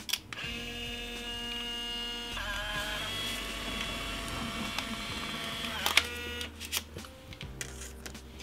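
Instant film camera: a shutter click, then its motor whining steadily for about five and a half seconds as it pushes out the print, stopping with a click.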